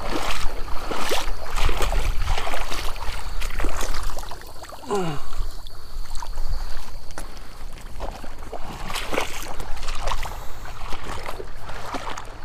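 A person wading through shallow marsh water, the water sloshing and splashing with each stride at a walking pace, easing off briefly about halfway through.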